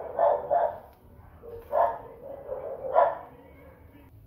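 A dog barking several times in short, separate barks: two close together near the start, then one near the middle and one near the end.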